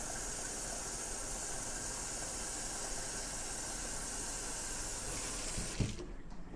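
Kitchen faucet running hot water into a plastic pitcher, a steady hiss that cuts off near the end with a brief knock.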